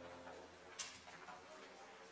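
Faint murmur of people talking in a quiet room, with one sharp click just under a second in.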